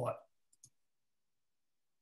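Two faint short clicks in quick succession, then dead silence.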